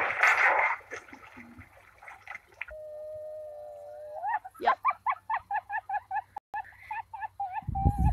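A dog in a life jacket falling off a kayak into the water, a short burst of splashing in the first second. Then a voice holds one pitched note for about a second and a half, followed by a run of short pitched hoots, about four a second.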